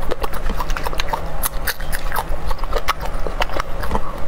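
Close-miked chewing of fresh red chili peppers: irregular crisp crunches and wet mouth clicks, several a second, over a steady low hum.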